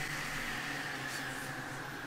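Steady low background hum and hiss with no distinct events: room tone.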